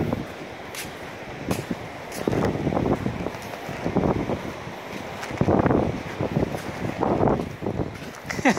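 Wind buffeting the microphone in uneven gusts while walking, with a few light clicks in the first couple of seconds.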